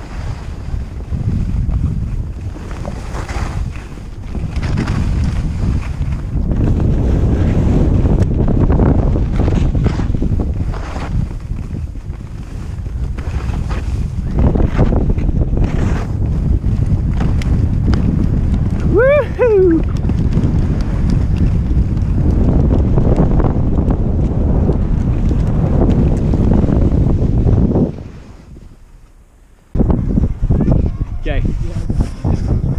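Heavy wind buffeting an action camera's microphone during a fast ski run, with skis scraping over packed snow. A short high call rises and falls about two-thirds of the way through. The rush dies down near the end.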